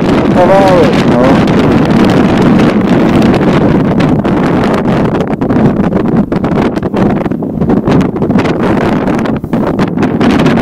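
Strong wind buffeting the microphone in loud, uneven gusts, with a short burst of voice near the start.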